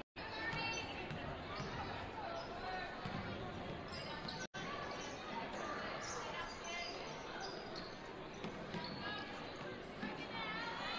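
Basketball dribbled on a hardwood gym floor, amid the voices of spectators and players in the gym. The sound cuts out completely for a moment at the start and again about four and a half seconds in.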